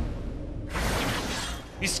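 A dramatic sound effect: a sudden rush of hissing noise about two-thirds of a second in, lasting under a second, over low background music.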